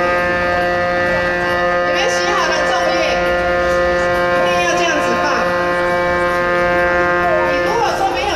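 A steady humming tone held at one unwavering pitch, rich in overtones, that cuts off shortly before the end.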